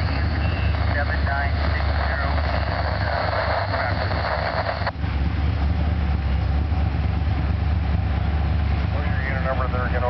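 Union Pacific passenger train cars rolling past on the rails with a steady low rumble. Over it, a scanner radio transmission with static and a voice cuts off sharply about five seconds in, and a voice comes over the radio again near the end.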